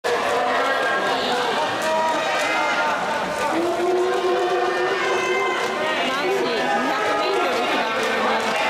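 A crowd of spectators talking and calling out over one another, with one voice holding a long call near the middle.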